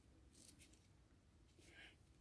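Near silence: room tone, with a couple of barely audible faint ticks.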